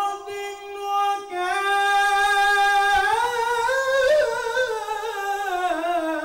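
A male Islamic chanter (mubtahil) singing an ibtihal, a devotional supplication, unaccompanied into a handheld microphone. He holds one long, ornamented line that climbs in pitch about three seconds in and sinks back down near the end.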